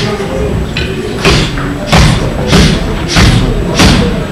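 A run of five loud thuds of strikes landing, evenly spaced about two-thirds of a second apart and starting about a second in.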